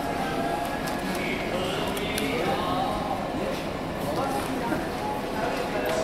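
Indistinct chatter of people inside a shop, with a few light clicks.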